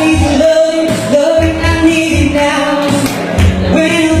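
A man singing an upbeat pop song into a microphone over loud backing music with a steady drum beat, holding long notes.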